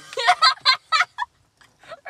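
Young women laughing: a quick run of high-pitched bursts of laughter that dies away after about a second and a half.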